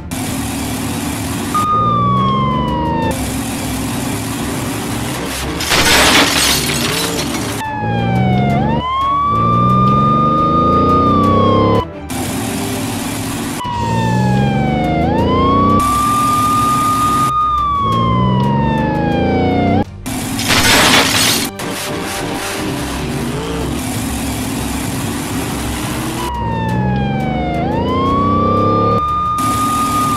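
Police car siren wailing, rising to a held high note and falling away in long repeating cycles, with a lower sweeping sound under it. Two brief loud rushes of noise cut in, about six seconds in and again about twenty-one seconds in.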